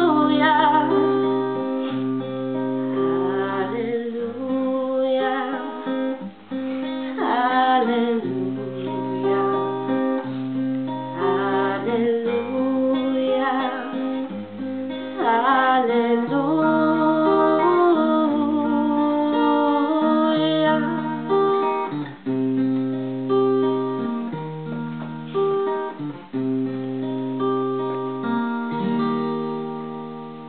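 A woman singing to her own strummed acoustic guitar chords, with the sung line moving freely in the first half and longer held notes over the chord changes later on.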